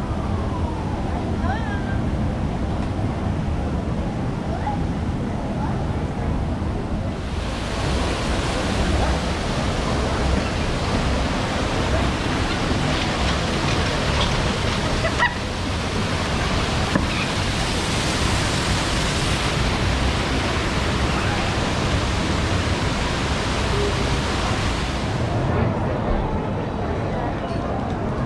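Steady rushing of a waterfall, starting about seven seconds in and lasting nearly to the end. Before it there is only low, muffled outdoor background noise.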